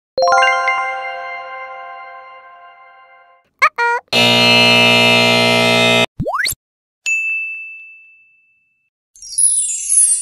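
A run of stock video-editing sound effects: a bell-like ding that rings out over about three seconds, two short blips, a loud steady buzzing tone lasting about two seconds, two quick rising swishes, and a short ping. Near the end comes a sparkling, glittery shimmer of the magic-effect kind, falling in pitch.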